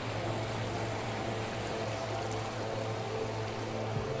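A motorboat engine running steadily as a low drone, over an even wash of outdoor water and wind noise.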